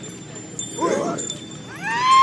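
Naga warrior dancers' vocal calls: a short shout about a second in, then a high cry that rises and settles into one long held note near the end.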